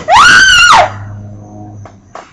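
A girl screaming once, a loud, high-pitched scream of under a second that rises and then falls in pitch.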